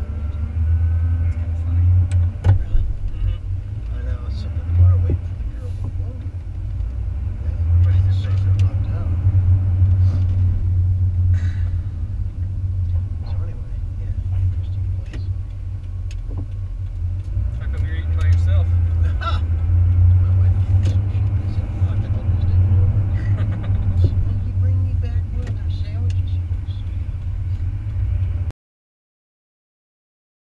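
Low, steady road and engine drone heard inside the cabin of a moving Ford F-150 as it is driven, with quiet conversation over it.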